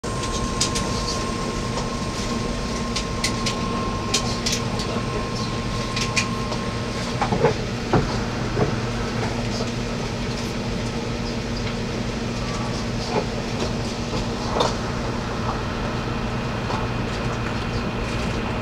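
Passenger train running at speed, heard from inside the car: a steady hum of motors and wheels on the rails, with scattered clicks and knocks from the track. A thin high whine cuts out about seven seconds in.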